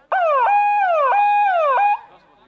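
Loud electronic siren-style sound effect: a tone that falls steadily in pitch, then jumps back up and falls again, about three identical sweeps. It starts and stops abruptly.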